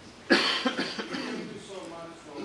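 A person coughing: a sudden loud cough about a third of a second in, followed by several quicker coughs over the next second, heard over a low voice.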